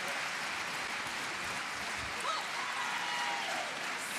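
Arena crowd applauding after a table tennis point: a steady wash of clapping and crowd noise, with a faint voice calling out in the second half.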